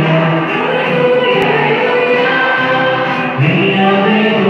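A church congregation singing a hymn together, many voices holding long notes, with a new phrase starting near the end.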